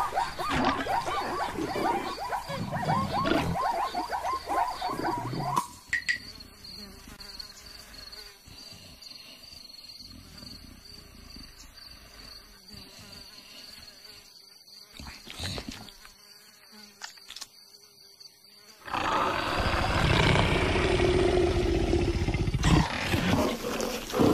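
Cartoon animal sound effects: a loud noisy opening, then from about six seconds a quiet stretch with an insect buzzing steadily, then from about nineteen seconds loud again with a big cat growling.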